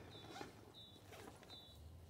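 Near silence: three faint, short high chirps about three-quarters of a second apart, typical of a small bird, over faint rustling of gear being handled in a fabric bag.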